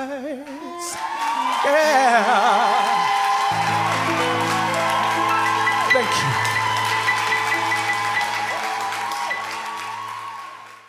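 Live soul-pop band ending a song: the male singer holds a wavering final note over the band, then the band sustains a closing chord while the audience applauds, fading out near the end.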